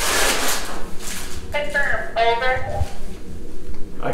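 A handheld two-way radio gives a short burst of static hiss, then a voice comes through it for about a second and a half.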